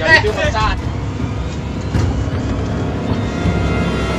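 Boat outboard motor running with a steady low rumble, under faint background music from about two seconds in; a voice is heard briefly at the start.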